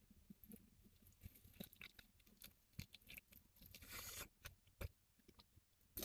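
Very faint chewing of a bite of soft-shell crab spider hand roll: scattered small wet clicks and crunches, with a short soft hiss about four seconds in.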